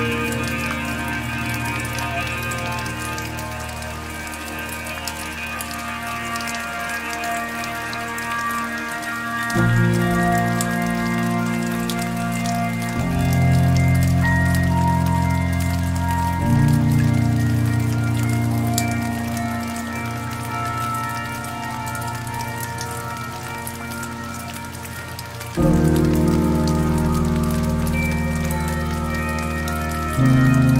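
Slow, soft piano music: low chords struck a few seconds apart, each fading away before the next. Under it runs a steady patter of rain.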